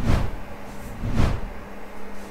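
Two whoosh sound effects marking an edit transition, one right at the start and a second about a second later.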